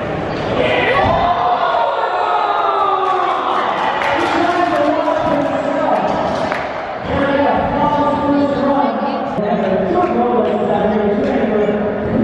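A voice echoing through a large indoor hall over crowd noise, with the occasional sharp thud of scooters landing on wooden ramps.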